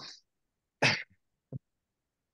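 A person's short cough or throat-clearing just under a second in, followed by a brief small throat sound about half a second later.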